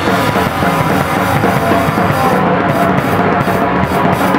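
Rock band playing live and loud: drum kit with cymbals, electric bass and electric guitar.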